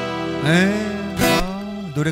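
Acoustic guitar with a man singing held notes at the close of a Korean pop song (gayo), with a sharp strum-like accent a little past a second in.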